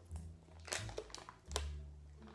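Foil wrapper of a block of blue cheese crinkling softly as it is peeled open by hand, with a few light crackles around the middle, over a faint low hum.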